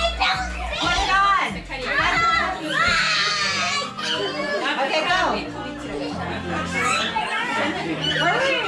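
Excited children's voices and chatter, with a high-pitched child's call about three seconds in, over background music.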